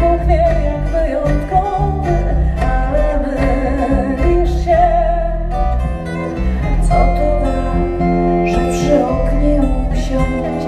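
Live acoustic band playing: a steel-string acoustic guitar and a fretless bass, with singing over them. The music is continuous, with held notes that waver in pitch.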